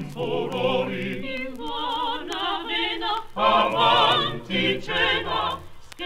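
Vocal music: voices singing with vibrato in short phrases separated by brief breaks, choir-like with little sign of instruments.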